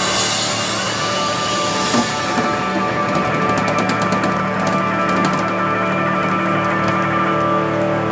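Live rock band holding one long sustained chord with drums and cymbals crashing over it, a quick flurry of hits in the middle: the big closing chord of the song.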